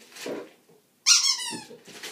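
A rubber squeaky toy squeaked once: a sudden loud, high squeak that falls in pitch over about half a second.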